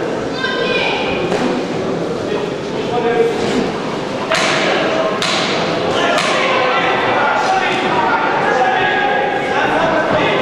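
Voices calling out from around a boxing ring, with about three sharp thuds of boxing gloves landing in the middle of the exchange.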